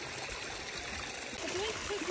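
Steady trickle and wash of flowing water in a rocky hot-spring pool, with a faint voice near the end.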